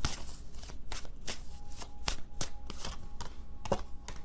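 A tarot deck being shuffled by hand: an irregular run of quick papery card clicks and slaps.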